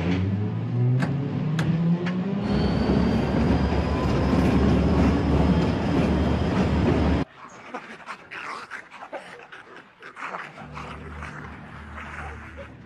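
A diesel locomotive engine rising in pitch as it revs up, then running loud and rumbling; it cuts off abruptly about seven seconds in. Quieter growling and snarling follows.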